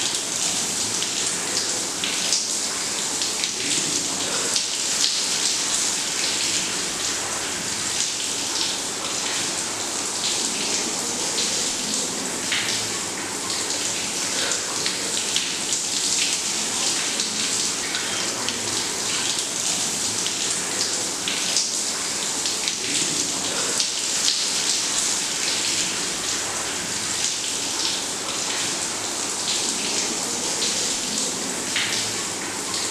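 Shower water running steadily, pouring over a person and splashing onto the tiled floor of a small bathroom.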